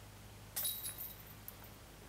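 A putted disc hitting the chains of a disc golf basket and dropping in for a made putt: a sudden metallic chain jingle about half a second in, rattling briefly and dying away, with one small clink about a second later.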